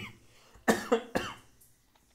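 A man coughing twice in quick succession, about half a second apart.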